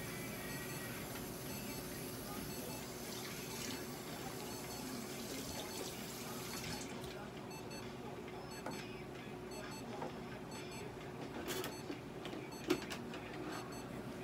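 Steady room hum and hiss with a faint high whine that stops about halfway through, and a couple of soft clicks near the end.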